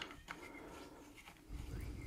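Faint wood-on-wood handling of a cherry-wood toy Land Rover as a wooden screwdriver is worked in the spare wheel's fixing on the bonnet: a few light clicks, then a soft low bump about one and a half seconds in.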